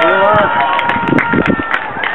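Voices shouting and calling out across a football pitch, loud and unbroken, with a faint steady tone under them in the first second.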